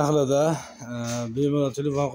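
A man talking, with no machine running.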